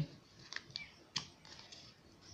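Paper being handled as the page is changed: a few faint rustles and clicks, the sharpest a little over a second in.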